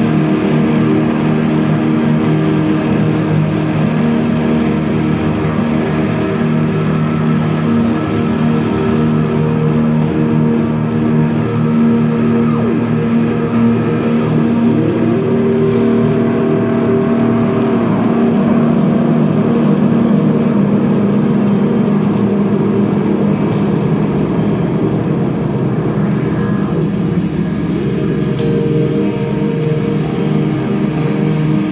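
Experimental drone music: layered guitar loops holding a steady wash of sustained low tones that shift only slowly.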